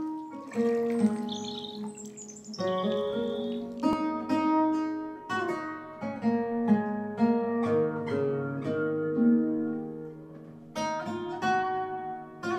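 Background music: acoustic guitar playing a run of plucked notes, each ringing out and fading.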